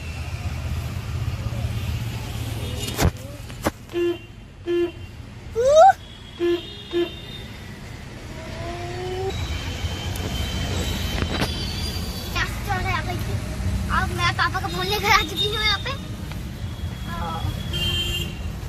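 A car horn sounds in four short beeps, in two quick pairs, over the steady low rumble of a car and the traffic around it. Voices are heard later on.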